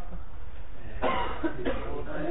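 A person coughs, a sudden rough burst about a second in.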